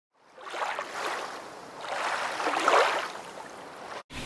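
Sea surf washing on a beach: a rushing hiss of waves that swells twice and eases off.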